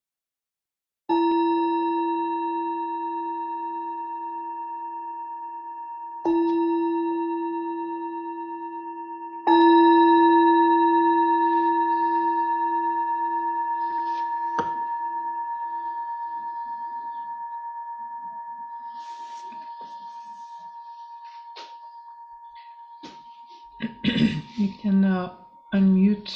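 Meditation bell of the singing-bowl kind, struck three times. The strikes come about five seconds and then three seconds apart, and the third is the loudest. Each rings on with a clear, slowly fading tone. The bell marks the close of a meditation sitting.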